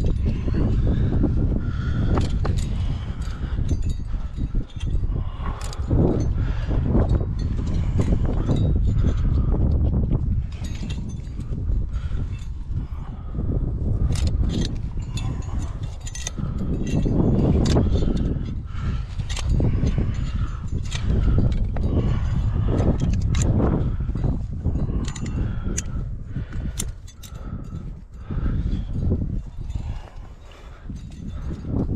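A climber moving up sandstone: climbing gear clinking and the hands and shoes knocking and scuffing on the rock, in irregular short clicks throughout. Under it runs a steady low rumbling noise on the head-mounted microphone.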